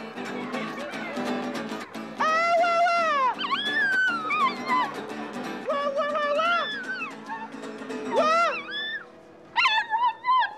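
A Chinese crested dog howling in a series of long, wavering, arching notes, singing along to a strummed acoustic guitar and a man's singing.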